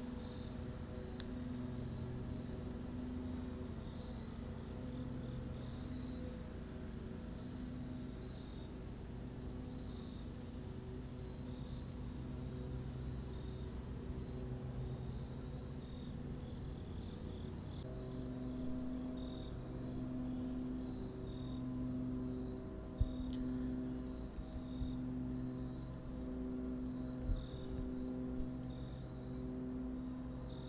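Chorus of crickets and other insects: a steady high-pitched trill with a short chirp repeating every second or two. Underneath runs a low hum that pulses about once a second and grows stronger in the second half. A couple of brief sharp knocks come late on.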